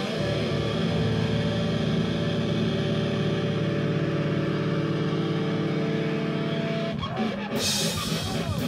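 Live rock band: a held, sustained guitar chord rings on steadily for about seven seconds, then the drums come back in with a cymbal crash near the end.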